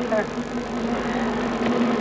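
A steady low hum over even background noise, with a brief trailing voice fragment at the very start.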